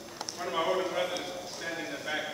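A man speaking into a lectern microphone, with a few light clicks in the first second.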